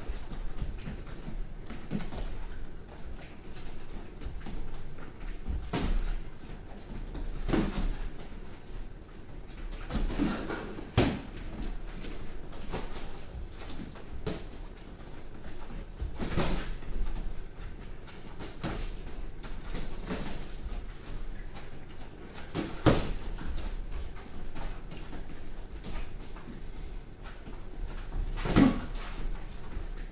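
Boxing gloves landing punches on gloves and headgear during sparring: scattered sharp thuds at irregular intervals of a few seconds.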